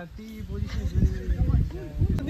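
Voices of a small group talking casually, not picked up as clear words, over a low rumbling noise on the microphone.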